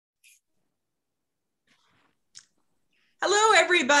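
Near silence broken by a few faint clicks, then a woman starts speaking about three seconds in.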